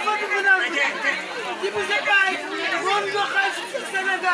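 Speech: a woman talking loudly into a hand-held megaphone, with crowd chatter around her.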